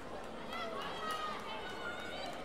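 Indistinct chatter and calls from several people at once, no single voice standing out, over the steady background of a large sports hall.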